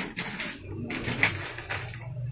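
Cloth rustling and swishing as a large piece of suit fabric is laid down over a shop counter, with a low hum underneath.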